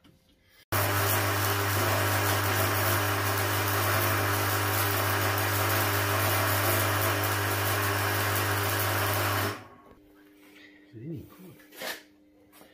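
Wire-feed (MIG) welder running a bead on galvanised steel square tube: a steady crackling buzz over a low hum, starting suddenly about a second in and cutting off about nine and a half seconds in.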